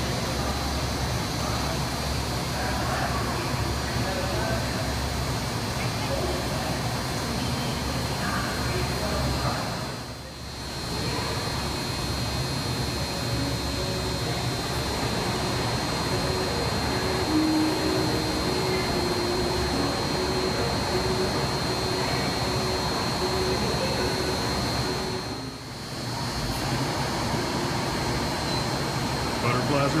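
A steady mechanical hum and hiss, like an air-handling system, with a constant faint high whine over it and indistinct voices murmuring in the background. The level dips briefly twice.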